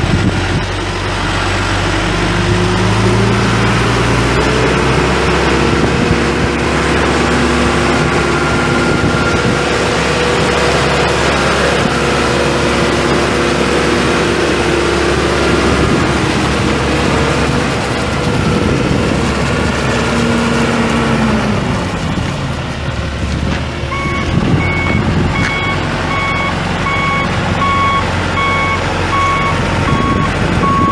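The backhoe's John Deere 4.5 L four-cylinder turbo diesel revs up from idle a few seconds in, runs at high revs for about fifteen seconds, and drops back. About six seconds before the end the backup alarm starts beeping at an even pace as the machine reverses.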